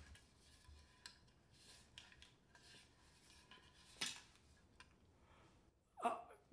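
Near silence: room tone with faint, scattered small clicks and rustles, and one sharper click about four seconds in.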